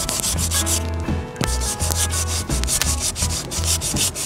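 Hand sanding block rubbed back and forth over hardened Bondo body filler, in quick, even rasping strokes with a brief pause about a second in.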